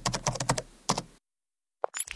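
A quick run of keyboard-typing clicks, about a dozen keystrokes, used as a sound effect in an animated logo intro. The clicks stop just past a second in.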